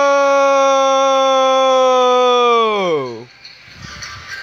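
A long, drawn-out shouted "Nooo!" held loud on one pitch, then sliding steeply down in pitch and cutting off about three seconds in, like a recording slowing to a stop.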